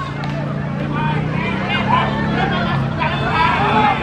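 Crowd of spectators chattering and calling out, many voices overlapping. A steady low hum runs underneath for the first couple of seconds.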